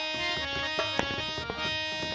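Live Indian folk-theatre music: a harmonium playing held, reedy melody notes over light hand-drum strokes.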